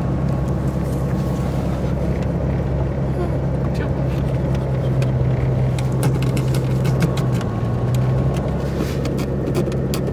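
Car interior while driving on a snow-covered road: a steady low engine and road drone with scattered light clicks, more of them near the end.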